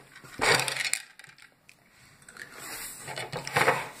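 Handling noises on a table: a short scuff near the start, a few light clicks about a second in, then a louder rustle and clatter near the end as a plate is set down on the table.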